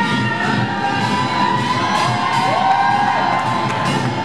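Poongmul percussion band drumming on janggu and buk, with a long, wavering high-pitched call held over the drums and a rising swoop about two and a half seconds in.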